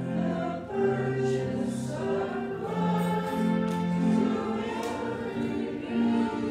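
Choir singing slow music with long held chords that change about once a second.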